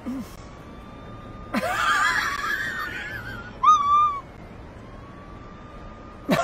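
A person close to the microphone giving high-pitched, squealing laughter in two bursts: a longer wavering one about a second and a half in, then a short squeal about a second later.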